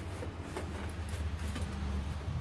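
A steady low hum, with a few faint clicks as a plastic motorcycle indicator is handled.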